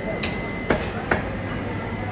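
Busy market-hall ambience: a steady din of background voices and hum, with a thin steady high tone. Four sharp knocks fall within the first second or so.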